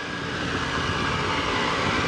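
A steady engine hum from machinery running in the background, growing slightly louder.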